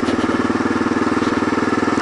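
Kawasaki KLR650's single-cylinder four-stroke engine running at a steady cruise on a dirt road, with an even, unchanging pulse and a steady rushing noise behind it.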